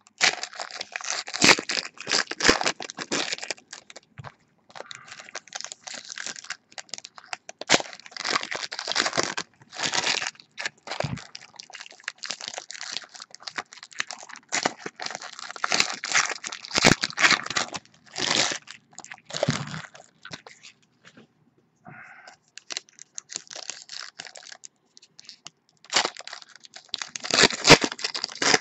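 Trading-card pack wrappers being torn open and crinkled by hand as the cards are handled, in irregular bursts with a brief lull about three-quarters of the way through.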